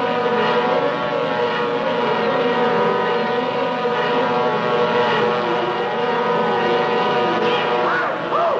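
Cartoon sound effect of an aircraft in a steep dive: a loud, steady drone of many held pitches.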